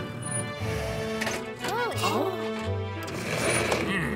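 Cartoon background music under a busy mechanical whirring sound effect, with a short rising-and-falling voice-like glide about two seconds in.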